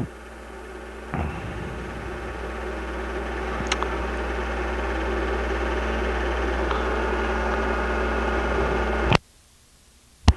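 Steady mechanical hum with a low electrical buzz underneath, slowly growing louder. It cuts off suddenly near the end, and a sharp click follows.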